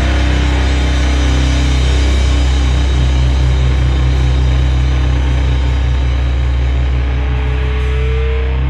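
Heavy stoner rock with distorted electric guitar and bass holding low, sustained notes; the chord changes about three seconds in.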